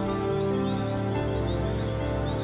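A cricket chirping evenly, about two short chirps a second, over background music of held notes.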